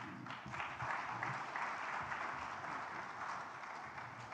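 Audience applauding in a large hall, rising quickly and then slowly fading.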